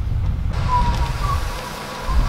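Outdoor street noise: a steady low rumble of wind on the microphone mixed with passing traffic. A faint thin whistling tone sounds for about a second in the middle.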